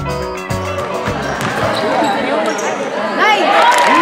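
Backing music that stops about a second in, giving way to the live sound of a basketball game in a gym: sneakers squeaking on the court in short rising and falling chirps, thickest near the end, with a ball bouncing and players' and spectators' voices.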